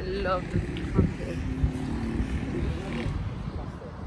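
Faint voices over a steady low outdoor rumble, with a few light knocks.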